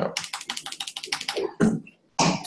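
Rapid typing on a laptop keyboard, a quick run of keystroke clicks, about a dozen a second, that stops a little past the middle, followed by one louder thump near the end.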